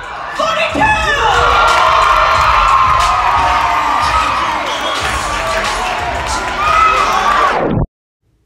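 Audience in a theatre hall cheering and shouting for a competitor as a placing is announced, many voices overlapping; it starts a moment in and cuts off abruptly just before the end.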